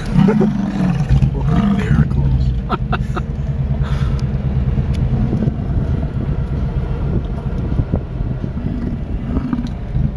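Car running, heard from inside the cabin as a steady low hum. A person laughs in the first couple of seconds.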